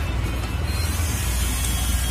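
Steady low rumble of a boat at sea with wind and water hiss, the hiss growing brighter about a second in.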